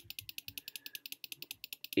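Computer mouse clicking rapidly and evenly, about eleven sharp clicks a second, as the debugger is stepped through the code.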